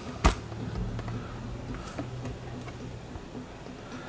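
A single sharp click about a quarter second in, then a steady low hum in a small room, with a few faint ticks about two seconds in.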